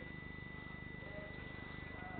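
Faint steady low hum with a fast, even flutter, overlaid by a thin, constant high-pitched whine.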